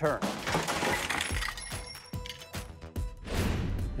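A welded metal barbecue tricycle crashing onto its side on pavement: a clatter of metal impacts that starts at once, with parts rattling and ringing on, under background music.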